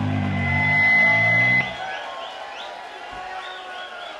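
A live rock band holds its final chord, with a steady high tone over it, and cuts off together about a second and a half in; the crowd then cheers and whoops.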